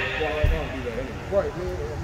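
Background talking from people in the hall, with one low thump about half a second in.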